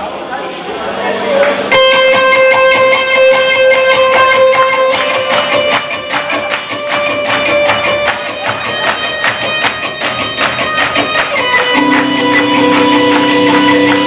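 Live electric guitar opening a rock song: ringing, sustained notes over a fast, even rhythmic pulse. A low held note joins about twelve seconds in.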